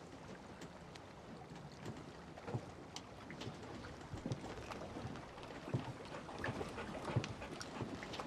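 Slow footsteps and a wheeled suitcase knocking over wooden dock planks, a short knock every second or less, over a steady outdoor hiss.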